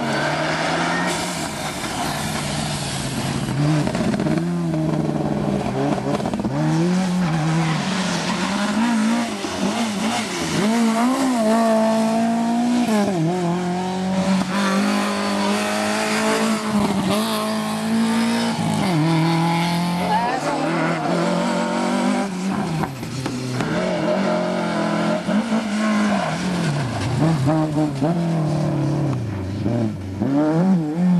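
Rally car engines revving hard through corners, one car after another. The pitch climbs and drops again and again as the drivers shift gears and come off and back on the throttle.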